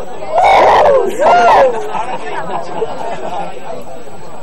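Two loud sung-out voice calls in the first second and a half, the tail of a festive chant, then a crowd of people chattering.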